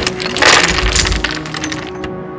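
Wooden Jenga blocks clattering: a sharp knock, then about a second and a half of many blocks rattling down onto the tabletop as the tower falls, over background music.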